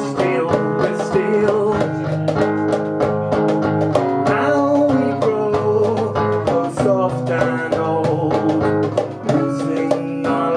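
Live acoustic folk music: several acoustic guitars and other plucked string instruments strumming and picking together.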